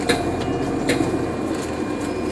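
Cabin noise inside a 2014 NovaBus LFS articulated hybrid bus: a steady low rumble from its Cummins ISL9 diesel and Allison EP50 hybrid drive, with a faint steady high whine. Two sharp rattles come about a tenth of a second and about a second in.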